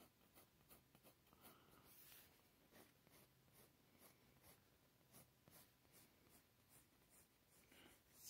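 Faint scratching of a graphite pencil on paper: a series of short, irregular strokes as lines are sketched.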